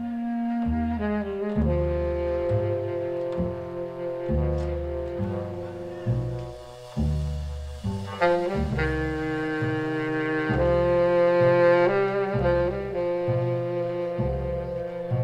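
Live jazz quartet playing a slow ballad: baritone saxophone and valve trombone holding long notes together over plucked double bass notes roughly one a second.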